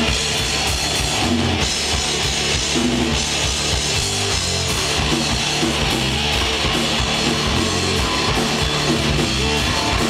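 Rock band playing live with two guitars, bass guitar and drum kit in a steady, loud instrumental passage without vocals.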